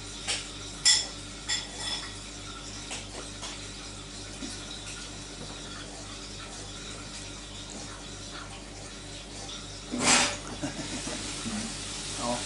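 A man drinking beer from a glass, with three small swallowing clicks in the first two seconds. After that only a low steady hum, and a short breathy burst about ten seconds in.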